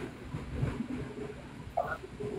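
A low, steady background rumble coming over a phone live-stream, with a short vocal sound near the end.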